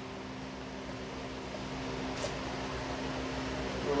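Electric fan running with a steady hum and airy whir, with one light click about halfway through.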